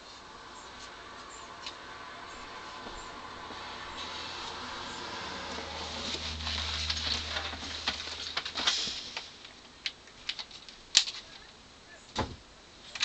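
Rustling and handling noises close to the microphone, building for several seconds, then a few sharp clicks near the end, one louder than the rest.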